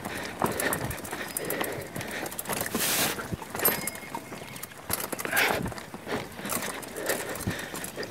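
Mountain bike clattering down a rocky dirt trail: a quick, uneven run of knocks and rattles as the wheels and frame hit stones, with tyres crunching over loose gravel.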